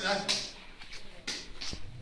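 Indistinct voices of a group in a hall, with a few short, sharp hand slaps.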